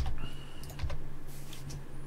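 A few scattered clicks and taps on a computer keyboard, over a low steady hum.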